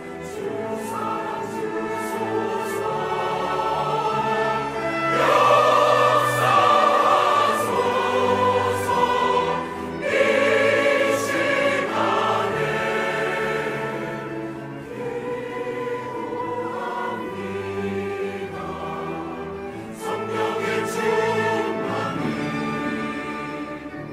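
A mixed choir singing a sacred anthem in Korean, accompanied by a chamber orchestra. The singing swells louder twice, about five and ten seconds in.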